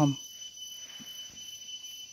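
Outdoor insect background: a steady high-pitched whine with a faster pulsing chirr above it, continuing unchanged, and a small click about a second in.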